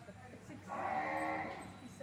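A young desi (Indian zebu) cow mooing once, a single call about a second long in the middle.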